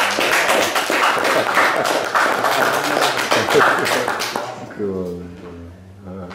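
Hand clapping from a small audience, a few seconds of dense applause that fades out about four and a half seconds in, followed by a voice.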